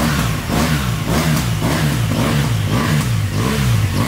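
BMW R1200 GS Adventure's boxer-twin engine being revved in quick repeated throttle blips, the pitch rising and falling about twice a second.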